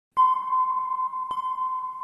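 A clear, bell-like ping struck twice, a little over a second apart. Each strike rings on, and the second fades away slowly.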